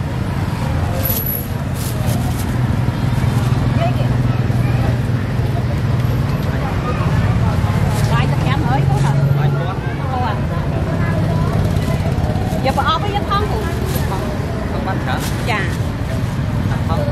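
Busy street-market ambience: a steady low engine hum with road traffic, and people talking.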